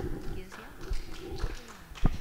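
A table microphone being handled and moved on its stand, with irregular knocks and thumps through the microphone and soft voices under them.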